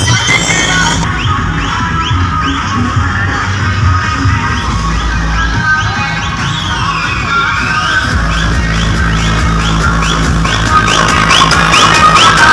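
Loud electronic dance music with heavy bass, played from a DJ truck's loudspeaker stack. A short rising synth chirp repeats about twice a second, and one swooping sweep comes midway.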